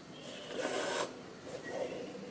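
Embroidery thread drawn through fabric stretched taut in an embroidery hoop: a soft rasp lasting about half a second, then a fainter one near the end.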